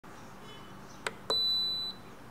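A temperature-controlled electric kettle's start/cancel knob being pressed: a click about a second in, then a second click and a single high beep of about half a second, the kettle acknowledging the button press.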